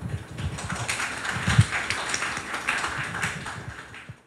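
Audience applauding: many irregular hand claps at the close of a lecture.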